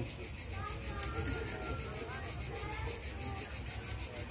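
A steady high-pitched insect chorus, with faint distant voices.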